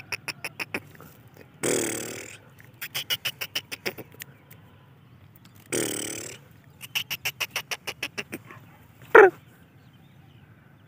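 Caged black francolin chick calling in bouts of rapid ticking notes, about ten a second, broken twice by a harsh rasping burst, with one short sweeping call, the loudest sound, near the end. It is the bird's excited calling toward its handler.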